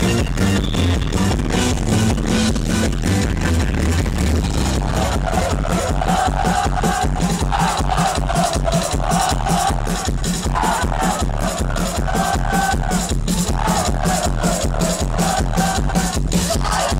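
Live band playing an electronic-rock song with a steady driving beat; about five seconds in, a melodic instrumental line comes in over it.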